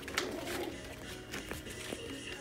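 Five-week-old mini goldendoodle puppies whimpering faintly with soft coo-like calls, among a few light taps and rustles as they move about.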